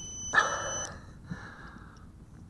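The micro FPV drone's onboard beeper sounds a steady high electronic tone that cuts off a little under a second in, over rustling handling noise as the drone is held in the hands.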